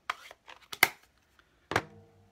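A series of sharp clacks and clicks from plastic ink pad cases being handled, opened or shut and set down on a desk, the loudest just under a second in.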